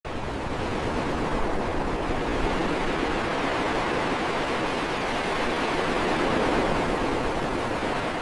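Steady rushing noise of ocean surf, an even wash with no distinct breaking waves.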